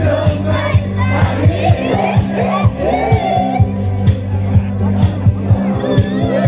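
A song played loud through a stage PA system: a steady drum beat over a heavy bass line, with several young male voices shouting and singing along into microphones.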